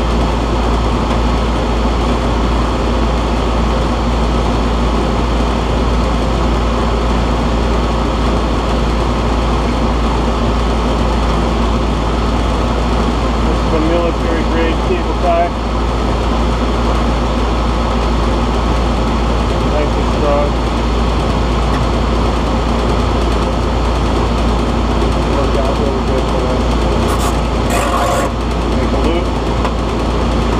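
Air-conditioning condenser fan running with a steady drone and a constant low hum, while the unit's compressor is not running. Brief clicks come near the end.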